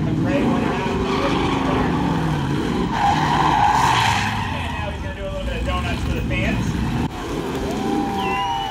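Street stock race cars' engines running and revving as they circle a short oval track, the pitch rising and falling as drivers get on and off the throttle, with a louder stretch a few seconds in.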